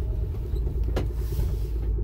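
Steady low rumble of a Dodge's engine running, heard from inside the cabin, with a single sharp click about a second in.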